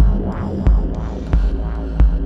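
Live electronic music played on hardware synthesizers and drum machines: a heavy kick drum about every two-thirds of a second over a sustained low bass, with synth tones sweeping between the beats.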